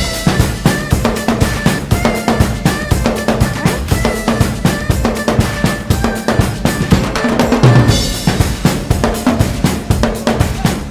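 Acoustic drum kit played in a fast, driving groove of kick, snare and cymbal hits, with a busier stretch about eight seconds in, over the song's backing track.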